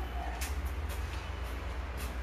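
Steady low rumble of workshop background noise, with a few faint light clicks about half a second to a second in.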